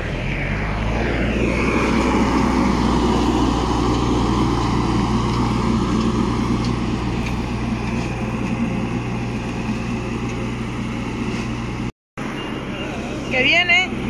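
Diesel engine of a telehandler loader running, a steady hum whose pitch sinks over the first few seconds and then holds. A short break near the end, then a woman's voice.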